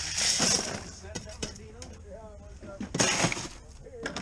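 Ice poured from a metal scoop into a fish bag, rattling and clinking over the fish, with scattered clicks after it and a second rattle of ice about three seconds in.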